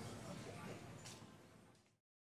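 Faint room ambience with indistinct voices, fading out steadily to dead silence at the end.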